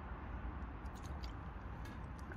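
Faint swallowing of water from a plastic bottle to wash down a tablet, with a few soft clicks over a low steady rumble.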